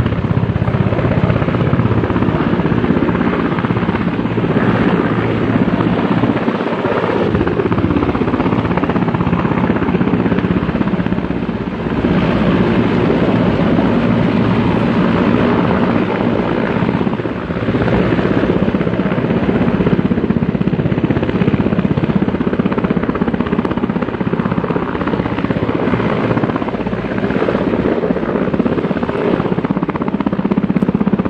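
A military helicopter's rotors and engine running loudly and steadily.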